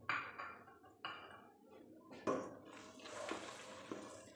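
A spatula stirring chopped tomatoes frying in hot oil in a nonstick pot: three sharp knocks and scrapes against the pot about a second apart, then a longer sizzle near the end.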